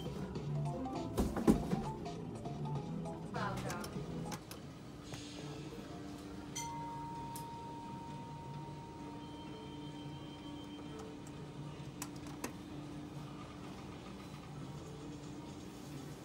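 Electronic game music and sound effects from a skill game machine, with a sharp knock about a second and a half in and a quick run of notes a couple of seconds later. Then a long held beep plays over a steady low hum as the bonus round comes up.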